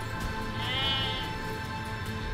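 A sheep bleats once, a short call rising and falling in pitch a little over half a second in, over steady background music.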